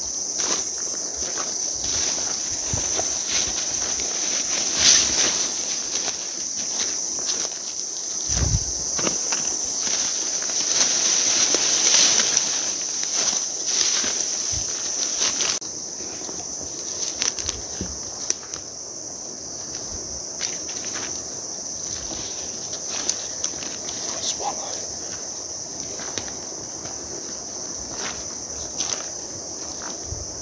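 A steady high insect chorus under footsteps crunching through leaf litter and brushing past ferns and undergrowth. Everything is a little quieter from about halfway.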